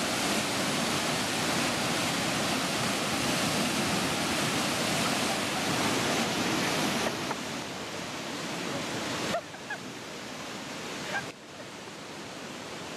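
Whitewater of a river rapid rushing steadily, a dense churning water noise. It drops in steps to a quieter level over the last few seconds.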